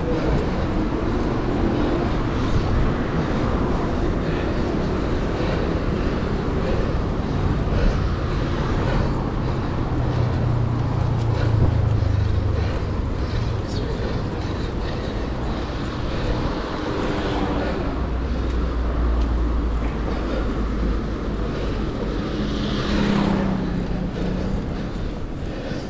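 Steady wind and road noise from a bicycle ride along a city street, with car traffic running alongside. Deeper rumbles of passing vehicles swell up around the middle and again later.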